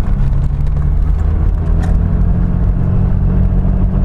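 Mercedes-Benz diesel engine pulling steadily under throttle, heard from inside the car's cabin as a low, even diesel rumble.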